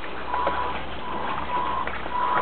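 Electric motor and gears of a radio-controlled scale 4x4 truck whining at one steady pitch, stopping and starting several times in short bursts.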